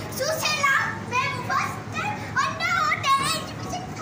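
Children's voices chattering and calling out, several at once, high-pitched and excited.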